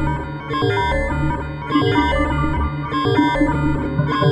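Synthesizer music from the Fragment spectral software synthesizer: clusters of bright, overtone-rich tones that start and stop over a low bass, with a delay echoing them.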